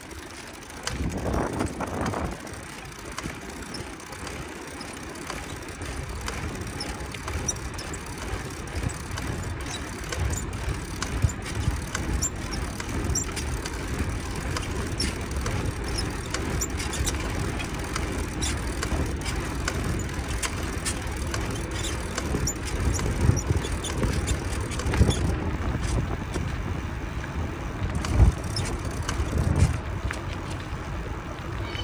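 A bicycle riding along a paved street, heard from a camera on its handlebars: a steady low wind rumble on the microphone and tyre noise, with scattered short clicks and knocks. There is a louder rush about a second in.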